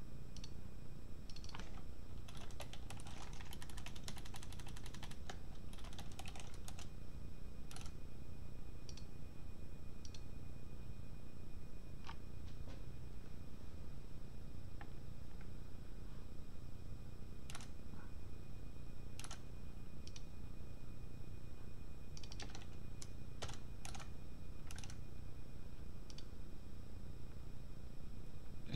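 Typing on a computer keyboard in short bursts of quick keystrokes, with scattered single clicks in between, over a steady low hum.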